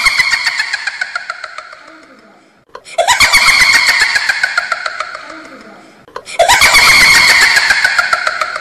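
A loud, rapidly pulsing, voice-like sound that falls in pitch and fades over about two and a half seconds. The identical sound plays three times, starting again about three seconds in and about six seconds in, like a looped comic sound clip.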